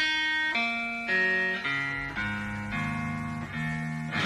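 Guitar playing a run of clean, ringing chords, starting abruptly and moving to a new chord about every half-second, in a live rock band performance.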